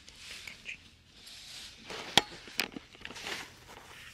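Soft rustling of steps on a dirt forest path, with one sharp knock about two seconds in and a fainter one just after.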